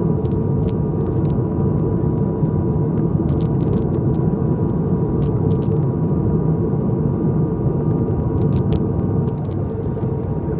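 Cabin noise of an ATR 72-600 on final approach: its twin Pratt & Whitney Canada PW127-series turboprops and propellers give a steady drone with rushing airflow and a constant propeller hum. A few faint clicks are heard over it.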